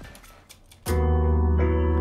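Piano intro of a song's backing track starting about a second in: sustained chords with a chord change soon after, very upbeat and in a major key.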